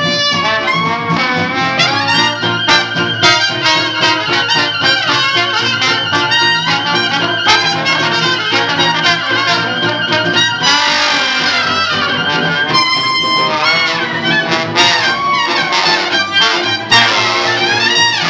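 Live traditional New Orleans jazz from a small band. The trumpet carries the lead with trombone and clarinet around it, over upright bass and strummed guitars keeping a steady beat.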